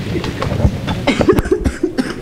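A person coughing, over low, indistinct talk.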